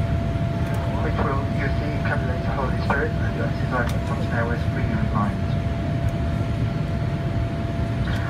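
Steady low rumble of engine and airflow noise inside a Boeing 787 cabin in flight, with a cabin PA announcement speaking over it in broken phrases, mostly in the first half, and a thin steady tone throughout.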